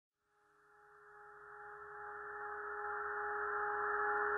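A cappella vocal drone fading in from silence about a second in and swelling gradually: a steady held low tone with a higher one above it and a soft airy hiss.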